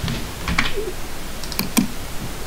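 Computer keyboard and mouse clicking: a few separate key presses and clicks, two close together near the end, as text is copied and pasted.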